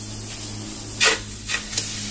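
A piece of beef set down with metal tongs on a metal baking tray heated over a flame: a sharp knock about a second in, then two lighter taps, over a steady low hum.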